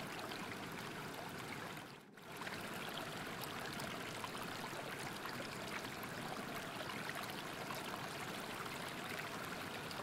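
Steady rushing water of a stream, a soft ambient water sound bed, with a brief dip in level about two seconds in.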